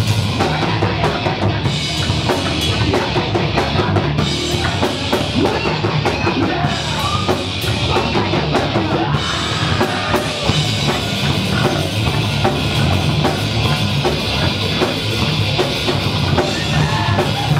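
Metal band playing live and loud: fast, hard-hitting drum kit with driving bass drum and snare under amplified guitars, continuous throughout.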